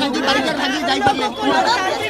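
Speech only: a woman talking with chatter from other voices around her.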